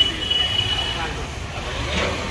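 Ride noise from inside a moving electric rickshaw: a steady low rumble with street voices in the background, and a thin high tone through the first second.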